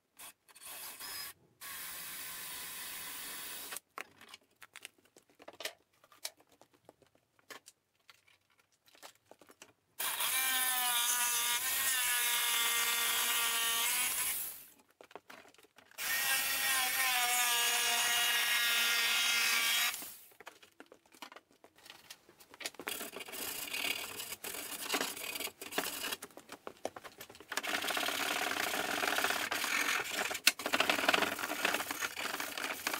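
Hand-held drill-driver running in several separate bursts of a few seconds, its motor pitch sagging and recovering as screws are backed out and driven into the shelf. Near the end a rougher, uneven tool noise runs on for several seconds.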